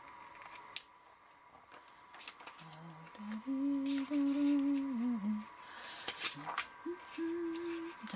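A woman humming a few held notes to herself: a short phrase in the middle and one more note near the end. Between them come quiet crisp clicks and rustles of paper card being folded and pressed flat by hand.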